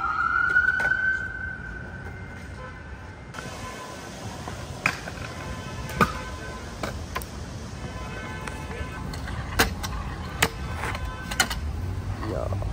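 An emergency-vehicle siren wails, its pitch rising and then holding before it drops out about three seconds in. After that, stunt scooter wheels roll on concrete, with several sharp clacks of the deck and wheels hitting the pavement.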